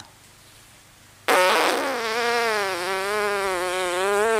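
Lips buzzing as air from puffed-out cheeks is pushed slowly through a small opening at the centre of the lips: one sustained, fart-like buzz lasting about three seconds, starting about a second in, its pitch dipping slightly and then holding steady. It is a circular-breathing exercise: the cheeks keep the buzz going while a breath is drawn in through the nose.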